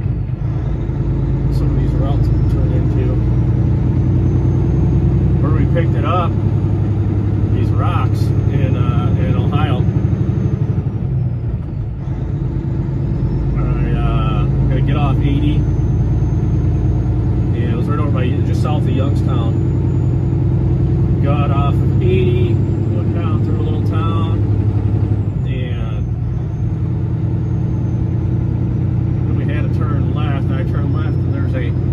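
Truck engine running steadily while driving, heard from inside the cab, with road noise; it eases off briefly about twelve seconds in. A voice comes and goes over it, too unclear to make out words.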